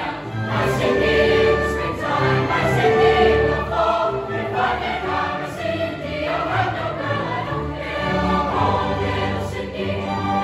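Large mixed choir singing a piece in parts, with long held chords.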